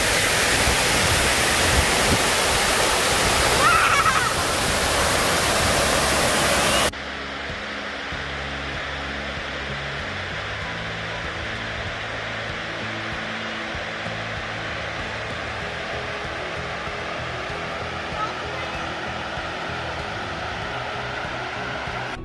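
Floodwater pouring over the stone face of the overflowing Derwent Dam, a loud steady rush of falling water heard close up, which cuts off abruptly about seven seconds in. A softer, distant rush of the same overflow carries on after that.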